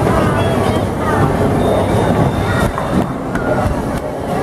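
Bowling alley din: a steady low rumble of balls rolling on the lanes and the machinery, with scattered voices of people chattering over it.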